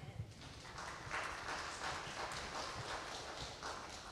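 Congregation clapping: a patter of many hand claps that builds about a second in and fades away near the end.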